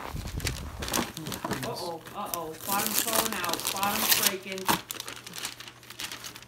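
Tissue paper crinkling and rustling as a gift is pulled out of its box, loudest around the middle, with people's voices among it.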